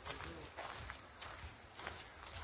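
Footsteps of someone walking on a packed sandy dirt path, a series of soft crunching steps.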